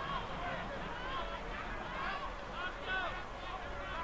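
Stadium crowd noise: a steady murmur of many spectators, with short high-pitched shouts and calls rising and falling over it.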